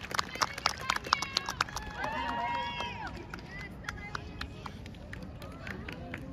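Small audience clapping and calling out, with one drawn-out cheer about two seconds in. The clapping thins out toward the end.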